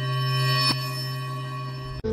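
Intro logo sound effect: a held, ringing tone with many overtones that swells up, peaks with a short click about two thirds of a second in, then slowly eases off.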